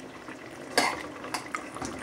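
A utensil knocking against the side of a metal cooking pot while stirring a thick kidney stew. There is one sharp clink about a second in, then two lighter taps.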